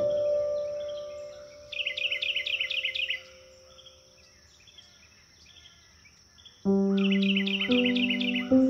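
Soft solo piano with recorded birdsong: a held piano note fades away while a songbird gives a rapid trill of high chirps lasting about a second and a half. After a few quiet seconds with faint chirps, a low piano chord enters near the end and the bird trills again.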